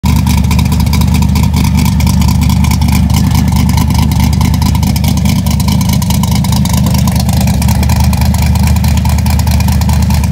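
Ford 351 Windsor V8 with a Trick Flow Stage 3 camshaft, Flowtech forward headers and Flowmaster 10 mufflers, idling steadily and loudly with rapid, even firing pulses.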